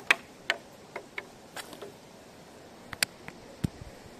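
A just-landed trout flapping on the line against the stone paving: about ten irregular sharp slaps and clicks, in a cluster over the first two seconds and another near the end, the last with a dull thud.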